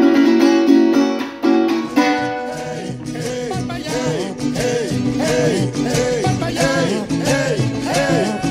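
Last strummed chords on a Venezuelan cuatro, which stop about two and a half seconds in. Recorded Latin-style music with a steady rhythm and a repeating figure takes over.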